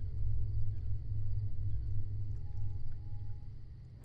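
Low, steady rumbling drone from a film soundtrack, fading down toward the end, with a faint thin tone held briefly a little past the middle.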